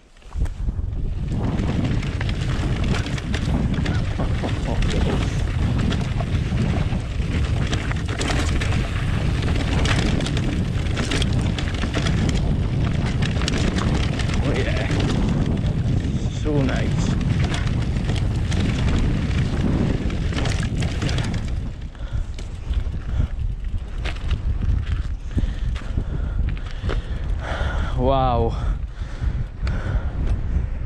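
Wind buffeting the microphone of a camera mounted on a mountain bike in motion, a steady low rumble, with frequent clicks and rattles from the bike over a rough trail.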